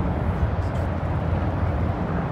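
Steady low rumble of vehicle engines running, under an even outdoor background noise.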